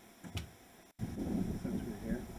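Outdoor ambience that cuts out abruptly about a second in, then comes back as a steady low rushing noise of wind on the camera microphone.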